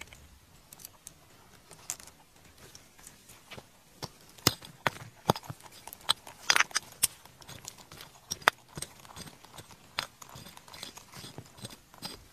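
Fingers scraping and digging through dry, stony soil: a run of small scratches and clicks of grit and pebbles, busiest and loudest in the middle.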